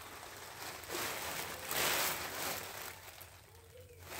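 Black plastic trash bag rustling and crinkling as it is handled and shaken out, in soft swells that die down near the end.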